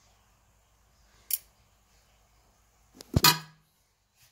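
Metal snake tongs handled in a plastic tub: a short sharp click about a second in, then a louder knock with a brief scrape near the end.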